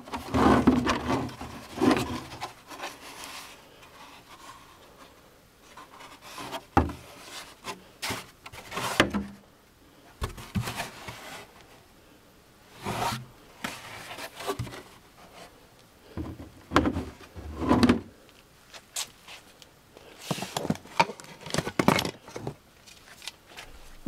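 Intermittent rubbing, scraping and knocks of hard plastic parts being handled: a 4-inch plastic elbow and hose adapter being fitted and bolted to a plastic trash-bin lid.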